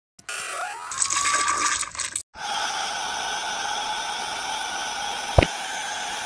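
A short rushing, water-like sound with a rising whistle, then after a brief gap a steady, static-like hiss, cut once by a quick falling swoop near the end.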